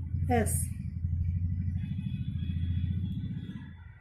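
Low engine rumble with a fast even pulse, like a motor vehicle running close by, steady for about three seconds and fading out near the end.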